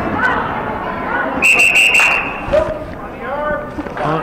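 Referee's whistle blown once, a steady shrill tone lasting about a second, stopping play for a foul. Voices are heard around it.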